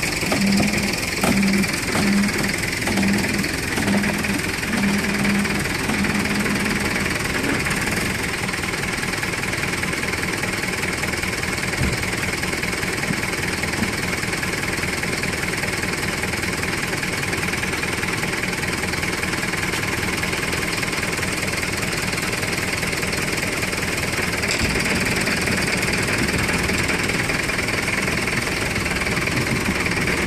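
Flatbed tow truck's engine running steadily while a crashed Ferrari 458 is pulled up onto the bed, with a low pulsing knock about one and a half times a second during the first several seconds.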